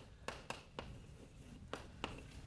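Chalk writing on a blackboard: several faint, short taps and scratches as a word is written, with a pause about halfway through.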